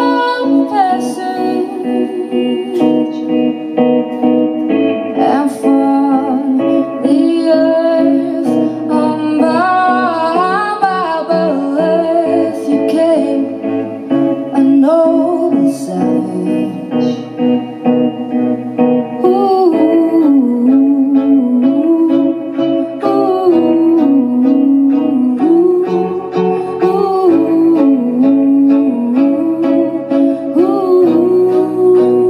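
Woman singing a song live into a microphone, accompanied by a band and a string section including cello and violin.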